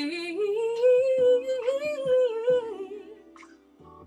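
A woman's solo voice singing a wordless R&B vocal run: it slides up into a held note, then bends up and down through a long melisma before fading out about three seconds in.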